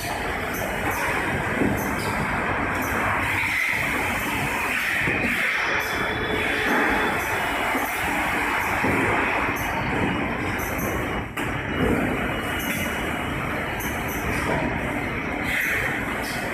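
Automated case packing line running, with a steady mechanical rumble from powered roller conveyors carrying cartons and the packing machinery at work.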